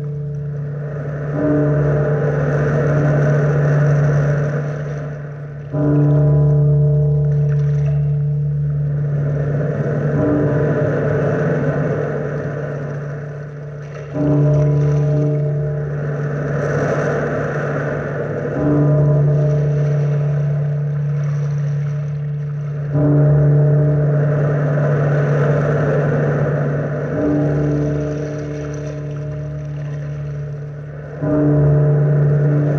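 A deep bell tolling slowly, struck about every four seconds and ringing on between strokes, over the swelling and fading wash of surf.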